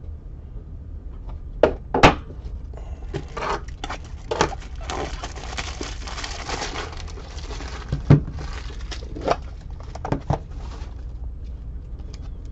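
Trading-card packs and cards being handled at a table: a scattering of sharp taps and knocks, with a stretch of wrapper crinkling and rustling about five to seven seconds in, over a steady low hum.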